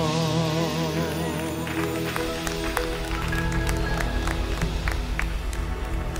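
Live gospel praise song coming to its end: a singer holds a last note with vibrato that fades about a second in, and the band goes on with sustained low chords and scattered sharp hits.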